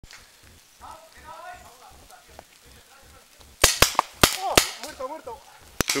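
Paintball markers firing: a quick string of about five sharp shots a little past halfway, then one more shot near the end, with faint distant voices before and between.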